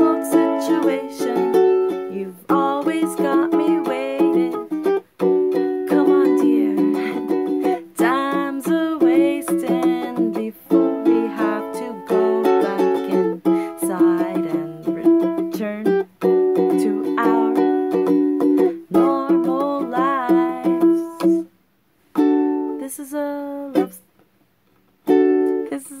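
Ukulele strummed in chords with a woman singing over it. The music breaks off about 21 seconds in, with a few chords and short silences before the strumming starts again near the end.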